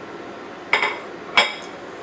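Two clinks of a spatula against a stainless steel saucepan, about two-thirds of a second apart, the pan ringing briefly after each.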